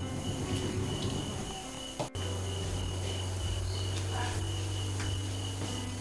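Steady background noise: a faint, even high-pitched tone over a low hum. A brief dropout comes about two seconds in, after which the hum is steadier.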